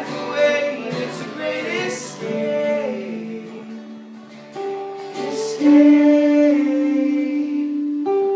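Acoustic and electric guitars strummed together in an informal jam, with a man singing over them; the voice holds one long note over the last two seconds or so.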